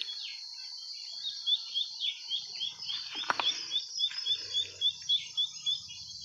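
A bird calling in a rapid run of short, falling high chirps, about five a second, over a steady high-pitched background hiss, with one sharp click near the middle.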